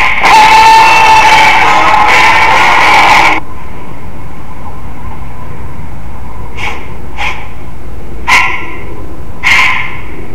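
Loud music that cuts off suddenly about three and a half seconds in. Then a dog barks four times, singly and a second or so apart.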